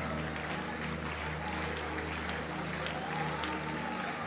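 Soft background music holding a steady low chord, under the faint even noise of a congregation clapping and stirring.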